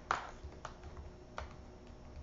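A few light, sharp clicks, the loudest just after the start, with others about half a second and a second and a half in, over faint room noise.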